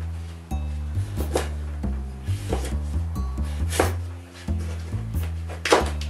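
A kitchen knife cutting through a raw sweet potato and knocking on a wooden cutting board, with about six separate cuts, the loudest near the end. Background music with a steady bass line plays throughout.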